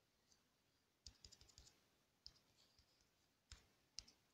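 Faint clicks of typing on a phone's on-screen keyboard: a quick run of taps about a second in, then a few single taps, with near silence between them.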